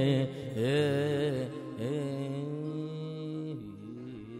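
A male voice sings the last ornamented phrases of a Gujarati folk song over a harmonium. The song settles into a long held note and chord, and the sound fades away near the end as the song finishes.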